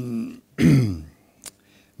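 A man clearing his throat: a short hum, then a louder rasping clear that falls in pitch, followed by a single sharp click.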